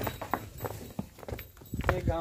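A buffalo's hooves stepping on hard, dry dirt as it walks, an uneven series of short knocks and scuffs.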